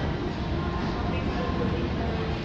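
Steady low rumble with faint, distant voices: the indoor ambience of a large shopping-mall food court.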